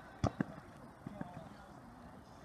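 Two sharp knocks of a football being struck in quick succession, about a quarter second in, over distant players' voices on the pitch.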